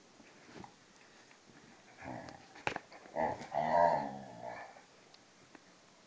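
Dogs growling while play fighting, a Hungarian vizsla and a German shorthaired pointer. A rough growl starts about two seconds in, with a sharp click in the middle of it. A longer, wavering growl of about a second and a half follows.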